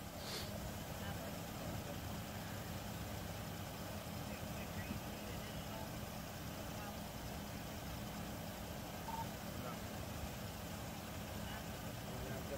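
Steady low hum of a vehicle engine idling, with faint, indistinct voices talking.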